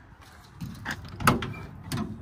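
Front door of a 1962 Rambler American being opened. A few sharp metallic clicks and clunks come from the latch and the door, the loudest just past halfway.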